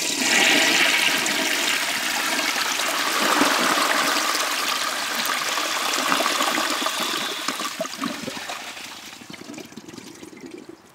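A 1927 Standard Devoro flushometer toilet flushing, its valve opened a little past a quarter turn: a strong rush of water swirling down the bowl that tapers off over the last couple of seconds as the flush ends.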